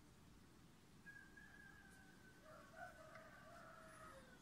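A faint, distant animal call over near-silent background hiss, starting about a second in and drawn out for some three seconds: first one held tone, then a lower, wavering part.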